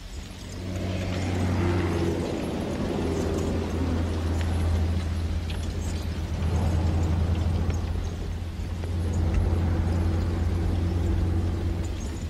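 A horse-drawn harrow rattling and scraping over a dirt track, under a steady low mechanical hum that sets in about half a second in and is the loudest sound.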